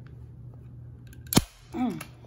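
A Bostitch manual staple gun fires once, a single sharp snap about a second and a half in, driving a staple through upholstery fabric.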